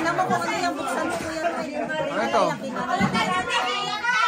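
Several people talking at once, overlapping chatter of a small group.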